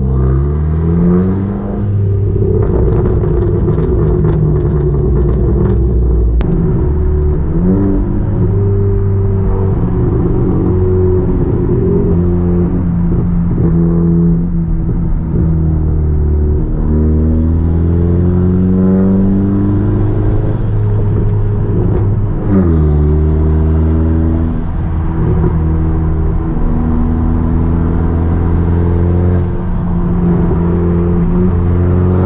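Car engine and exhaust heard from inside the cabin, pulling up through the gears. Its pitch climbs, holds steady while cruising, then drops and climbs again at each gear change, about 8 s and 23 s in.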